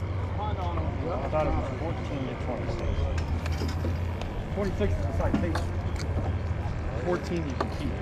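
Background chatter of several people talking at once, too faint to make out, over a steady low rumble.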